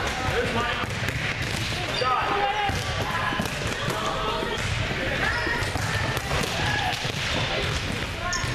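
Volleyballs being hit and bouncing on a gym floor in repeated drill contacts, with indistinct voices of players and coaches.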